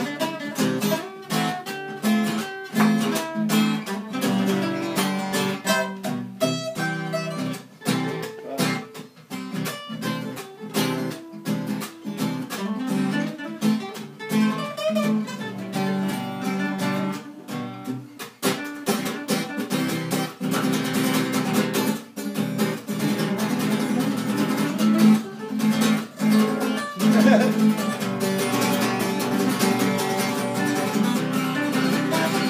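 Two steel-string acoustic guitars played together, strumming and picking chords in a steady rhythm.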